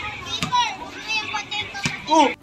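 Children's voices calling and chattering, with two sharp knocks, one just under half a second in and one near the end.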